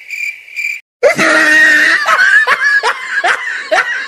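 Cricket chirping, a high steady pulse about twice a second, cuts off; about a second later loud laughter breaks in and carries on as a rapid run of short rising bursts.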